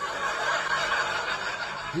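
A man's breathy, unvoiced hiss through the mouth, held steadily for about two seconds with no pitch to it, like a stifled laugh.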